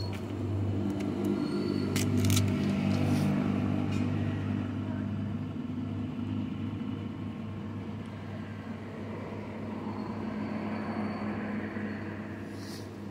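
A motor vehicle engine running nearby: a steady low hum that swells about two seconds in and then eases off. A few sharp clicks come around two to three seconds in.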